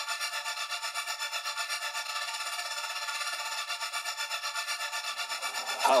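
Intro of a dark trap instrumental in D minor at 161 BPM: a thin, filtered melodic loop with no bass, pulsing quickly and evenly. A voice comes in right at the end.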